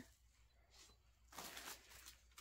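Near silence, then, a little over a second in, a brief faint crinkle of a clear plastic bag being handled.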